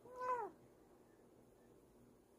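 A Bengal cat giving one short meow, about half a second long, its pitch rising slightly and then falling away.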